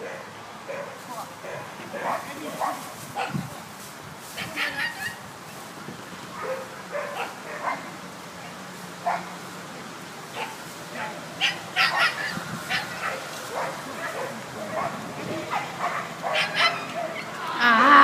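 Border collie barking in short bursts through an agility run, louder near the end.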